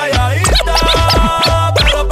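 DJ mix: a reggaeton beat with turntable scratches sweeping up and down in pitch over it, starting about half a second in.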